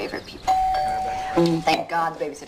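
A doorbell rings once about half a second in, one steady chime tone lasting about a second, announcing a visitor at the door.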